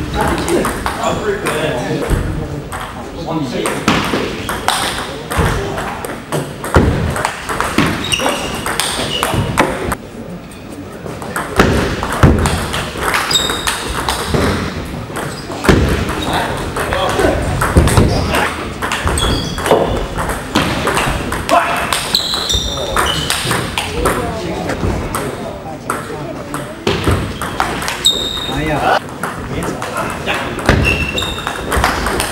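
Table tennis rallies: a celluloid ball clicking sharply off the bats and the table in quick back-and-forth exchanges, with a short pause between points. Background voices echo in a large hall.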